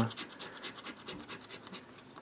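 Scratch-and-win lottery ticket being scratched, the scratcher's edge rasping off the silver scratch-off coating in quick repeated strokes.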